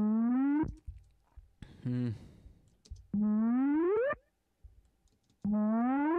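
A synthesized "bip" sample, reshaped with EQ, played back three times: each a pitched tone of just under a second that slides upward in pitch, with a strong buzzy row of overtones. Between the first and second plays comes a shorter, lower sound with a hiss.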